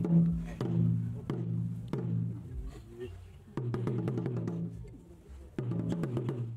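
A pair of Akan atumpan talking drums beaten with curved sticks, playing quick runs of strokes in phrases, with a short lull about five seconds in.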